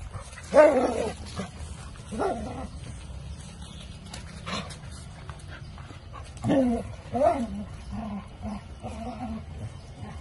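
Dogs barking during rough play with one another: a loud bark about half a second in, another near two seconds, a pair around six and a half to seven and a half seconds, then softer short calls.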